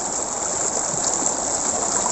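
Shallow stream running over rocks: a steady, even rushing of water.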